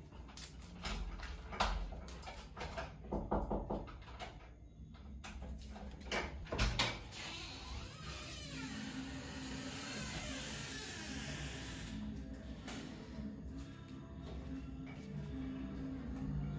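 A few knocks and clicks of a door being handled in the first half, then music from a room's built-in radio sound system playing steadily through the second half, a little loud.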